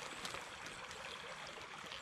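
Faint, steady trickle of water.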